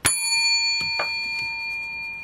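A large silver coin, held by its edges, pinged once and left ringing: a clear bell-like tone with several high overtones that fades slowly. A few light clicks come about a second in.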